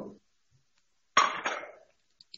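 A single kitchen clatter about a second in: something hard knocked or set down, starting sharply and fading over under a second.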